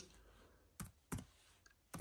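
Three short clicks from a laptop's keyboard or touchpad, about a second in, again a moment later, and once more near the end, with near silence between.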